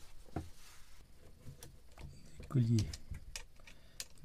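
Scattered light clicks and ticks of a screwdriver and hose clamps being worked by hand, with a short spoken sound about two and a half seconds in as the loudest event.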